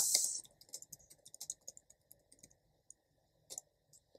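Computer keyboard typing: a run of quick, irregular, faint keystrokes.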